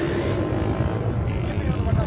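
Indistinct voices of people talking near the microphone over a steady low rumble.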